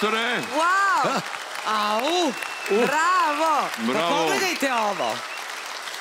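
Studio audience and judges applauding, with voices calling out over the clapping about four times.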